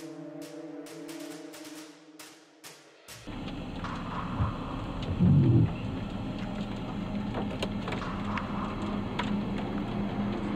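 Music with sustained tones and a regular drum beat cuts off suddenly about three seconds in. It gives way to outdoor storm noise with wind on the microphone, then a short, loud low rumble about two seconds later, and a steady hum through the rest.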